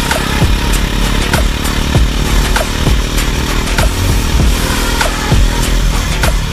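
Electronic dance music with a heavy, steady beat of booming kick drums, playing right after the song's "it's showtime" vocal cue.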